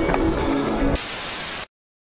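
Soundtrack music with sustained notes stops about a second in. It gives way to a short burst of static hiss, which cuts off abruptly to silence.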